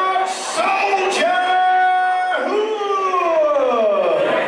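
Ring announcer's amplified voice calling out a fighter introduction in a long, drawn-out style. The syllables are stretched into held notes, and the last one slides down in pitch over more than a second.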